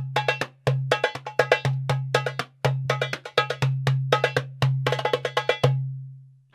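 Darbuka (goblet drum) played with both hands in a steady groove: a deep ringing doum bass stroke about once a second, with quick bright tek and ka strokes filling between. The pattern ends near the end on a doum left to ring out.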